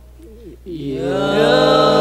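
Male a cappella group singing Islamic devotional song (sholawat) in harmony. After a brief pause with a short sliding tone, the voices come in together about two-thirds of a second in and swell into a full, loud held chord.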